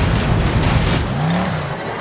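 An SUV's engine revving amid a dense, steady rush of storm wind, with a low drone rising and falling about a second and a half in.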